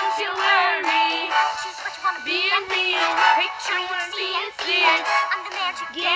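A song from an animated musical: a high female singing voice with wavering, bending notes over steady backing music.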